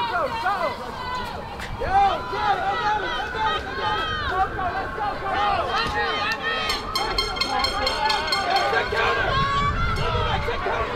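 Many voices shouting and calling out at once from players and spectators at a football game, over a background of crowd hubbub.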